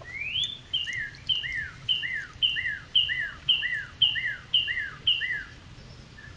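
A songbird singing: one rising whistle, then a two-note phrase, a short high note and a falling slur, repeated about nine times at roughly two a second.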